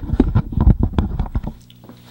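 Handling noise from a Rode VideoMic being set into a drawer: a run of quick knocks, clicks and rustles with a low rumble, stopping about one and a half seconds in.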